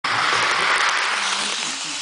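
Model passenger train running fast past the microphone: a loud, even noise of its wheels and motor that fades after about a second and a half.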